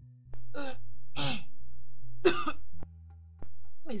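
A person coughing three times in quick succession over soft, sustained background music.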